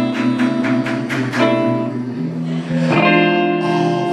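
Live band music: an electric guitar playing between sung lines, with a run of sharp drum hits in the first second and a half and new guitar notes coming in about three seconds in.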